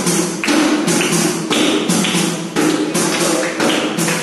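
Qawwali music with a steady beat of hand claps, about three a second.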